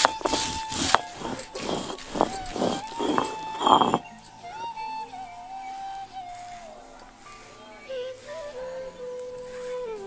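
A stone roller being rubbed back and forth over red chillies and coriander on a sil-batta grinding stone, in rough scraping strokes about twice a second for the first four seconds. Background music with a held melody plays throughout and is all that stays clear after the strokes fade.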